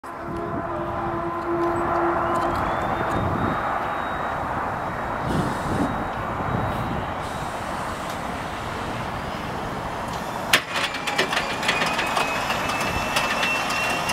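The Ilyushin Il-14T's Shvetsov ASh-82T radial engine being cranked for its first start, the propeller turning slowly without the engine catching. Under a steady mechanical noise, a whine rises about two and a half seconds in. A sharp clack comes about ten and a half seconds in, then rapid clicking over a second, slowly rising whine.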